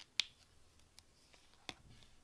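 A sharp plastic click of a gel pen's cap being pushed on, loudest just after the start, then a few lighter clicks and taps as the pen is handled and set down on the binder cover.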